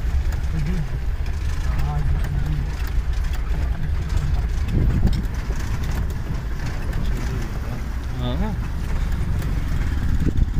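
Steady low rumble of a vehicle's engine and tyres on a rough road, heard from inside the cabin, with faint voices now and then.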